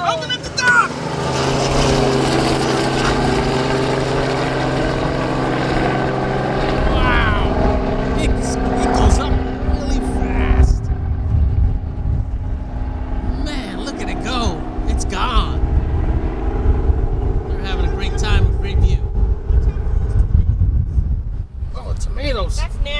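Light tour helicopter lifting off and flying away overhead, its rotor and engine giving a steady drone. From about seven seconds in a rougher low rumble joins it, and the drone thins after about ten seconds as the helicopter climbs away.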